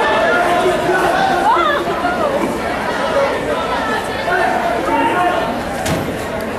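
Many overlapping voices of spectators chattering and calling out in a gymnasium hall, with no single speaker standing out.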